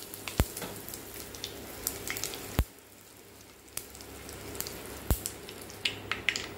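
Cumin seeds sizzling in hot oil in a clay pot: a faint steady hiss scattered with small crackles, and three sharper pops about two seconds apart.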